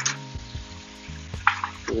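Background music with held notes, with a few short clicks of a knife slicing a lemon on a wooden cutting board.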